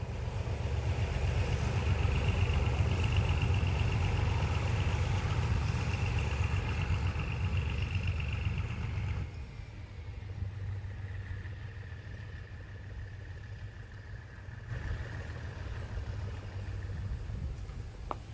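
Diesel locomotive engine running steadily at idle, a low sound with a faint high whine over it; it drops abruptly to a quieter level about halfway through.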